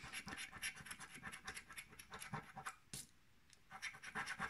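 A coin scratching the coating off a paper scratch card: quick, faint rasping strokes that stop briefly about three seconds in and then start again.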